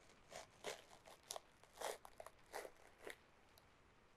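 Soft crinkling and crunching of something being handled: about eight short crackles over the first three seconds, the loudest near two seconds in.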